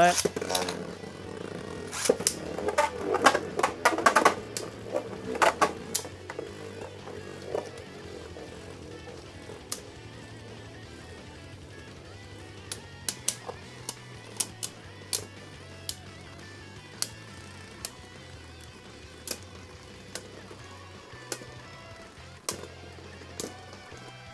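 Two plastic-and-metal Beyblade tops, one of them Ultimate Valkyrie on the Evolution' driver, spinning and battling in a stadium. A dense run of sharp clacks in the first few seconds as they are launched and collide, then a steady spinning whir broken by scattered sharp clicks as they knock together and against the stadium wall.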